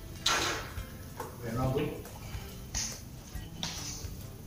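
A person's voice: one short vocal sound about a second and a half in, with short breathy rushes of noise near the start and near the end.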